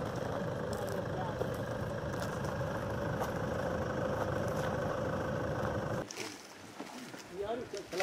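A Toyota SUV's engine running steadily close by, a constant hum under a steady noise, which stops suddenly about six seconds in. A quieter outdoor background follows, and a man starts talking near the end.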